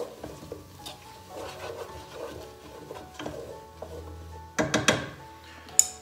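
A spoon stirring mushrooms and onions in a pan under soft background music, then a few sharp clacks of kitchenware on the pan near the end.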